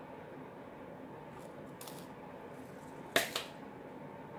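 A few faint light clicks, then a sharp double click about three seconds in: a beading needle or hard plastic bead tray knocking against the glass-topped table while seed beads are picked up for a bead loom. A faint steady room hum runs underneath.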